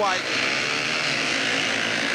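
Four speedway bikes' 500cc single-cylinder methanol engines running hard as the riders leave the start gate and accelerate away, a dense, steady engine din.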